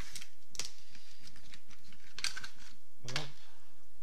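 A few light clicks and knocks of small objects being picked up and handled on a hobby workbench.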